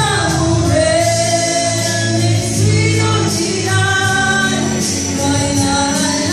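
A woman singing karaoke into a handheld microphone over a music backing track, holding long, drawn-out notes.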